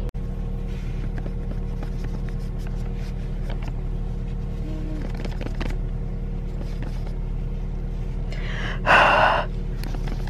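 A steady low hum with a few faint clicks as the camera is handled and moved, and a short, louder rush of rustling noise about nine seconds in.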